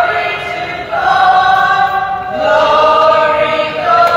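A group of voices singing a sung part of the Mass together, in long held notes whose pitch steps up or down about once a second.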